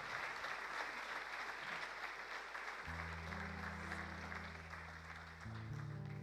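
Audience applauding, the clapping slowly fading. About three seconds in, low held notes from an instrument come in under it, shifting to another note near the end.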